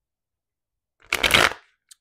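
Tarot cards shuffled or riffled in the hands: one short, dense rustle-and-flutter about a second in, lasting about half a second.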